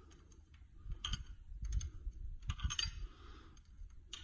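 Light metallic clicks and taps of an open-end wrench working the locknut on a valve adjusting screw of a Mack AC460P diesel's rocker arm, in a few short clusters about a second in, near the middle and near three seconds in, as the valve lash adjustment is locked down with the feeler gauge in place.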